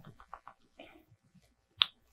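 Makeup sponge patting foundation onto the skin: a few soft, quick dabs, then one sharp click near the end.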